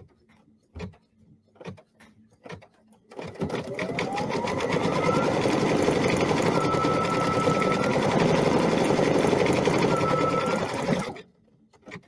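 Embroidery machine sewing a tack-down stitch over appliqué fabric along its placement line. After a few light clicks, it starts about three seconds in, winds up to speed with a rising whine, and runs a rapid, steady stitch. It stops abruptly about a second before the end.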